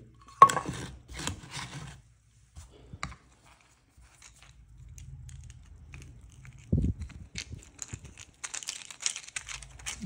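Close handling noise of small hardware: clicks and rustles as a screw on a magnetic screwdriver is worked through the hole of a small plastic spring clamp. A sharp click comes just after the start, a dull thump about seven seconds in, and a quick run of small clicks near the end.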